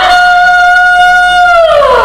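A woman singing one long high held note: her voice slides up into it, holds it steadily, then glides down near the end.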